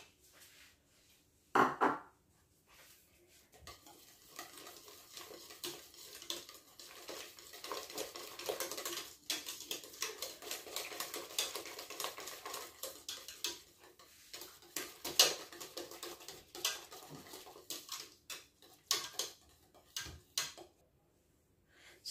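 Wire whisk stirring butter into thick custard in a stainless steel pot, a continuous run of quick scraping clicks of the metal whisk against the pot's sides and bottom. A single knock comes about two seconds in, before the whisking starts. The whisking stops shortly before the end.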